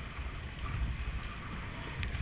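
Whitewater river rapids rushing around a kayak being paddled through them, with low wind buffeting on the microphone that grows stronger about half a second in.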